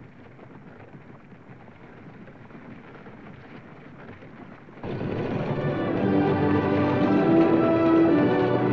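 A steady rumbling rattle of a moving horse-drawn stagecoach. About five seconds in, orchestral film music comes in and grows louder.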